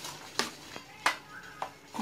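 Metal spoon stirring melting chocolate in a stainless steel bowl, clinking against the side of the bowl three times about half a second apart.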